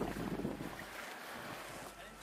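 Wind on the microphone over shallow seawater moving gently around a plastic kayak: an even, noisy rush without clear strokes.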